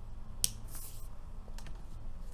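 A single sharp click about half a second in, followed by a short, soft rustle and two faint ticks, over a low steady hum: small objects being handled.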